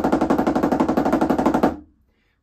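Snare drum playing a triplet tap roll: a fast, even run of strokes that stops near the end.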